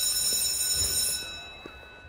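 A high-pitched electronic buzzing tone, steady and loud, fading away over the last second.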